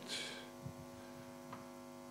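Steady electrical mains hum, several even tones held without change, with a few faint clicks.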